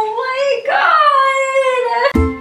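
A woman's drawn-out, high-pitched emotional "ohhh" cries, twice, the second held for over a second and slowly falling in pitch.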